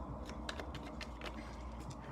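A deck of tarot cards being shuffled by hand: a quick, uneven run of light clicks and snaps as the cards slip against each other.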